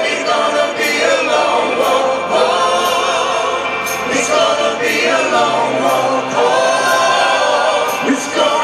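A rock band playing live, with a male lead vocal and a chorus of backing voices over the full band. Snare or cymbal hits fall about once a second.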